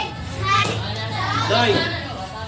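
Children's voices, several kids talking and calling out at once.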